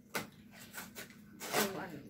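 Crinkling of a plastic candy package being handled and opened, with a short sharp tap just after the start and a child's voice briefly near the end.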